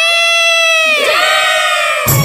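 A single voice holds one long, high, unaccompanied call that slides down in pitch from about a second in.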